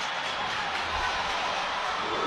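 Stadium crowd noise, a steady wash of sound from the football crowd just after a goal.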